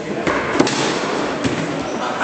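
Sharp cracks of foosball play, the ball being shot hard and rods and figures knocking against the table. There are three knocks, the loudest about half a second in.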